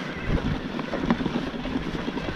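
Wind buffeting the microphone over the rumble and rattle of an e-mountain bike riding a rough dirt singletrack, with many small scattered knocks from the bike jolting over the ground.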